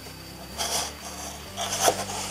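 Two short rasping, rubbing noises about a second apart, the second louder.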